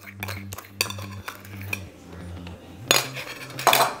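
Metal spoon clinking and scraping in a small stainless-steel bowl of mayonnaise, with light scattered taps and two louder scrapes near the end.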